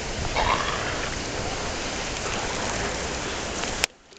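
Wind rushing over the microphone, a steady noise that cuts off abruptly with a click near the end.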